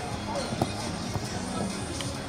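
Busy street ambience: background music playing with scattered voices of people nearby.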